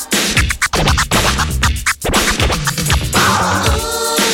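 Vinyl record scratched by hand on a DJ turntable: a run of quick back-and-forth scratches with short rising and falling sweeps, cut in over a dance beat.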